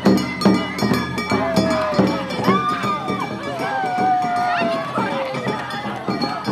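Japanese street festival procession: hand-held drums struck about twice a second with a clanking metal percussion, under a crowd of voices calling out long, rising and falling shouts.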